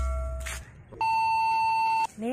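Edited-in sound effects: the tail of a deep booming hit fades out in the first half-second, then a steady electronic beep holds for about a second near the end.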